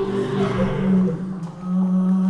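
Stage performers' voices singing long, steady held notes in a low chant, briefly dipping about one and a half seconds in.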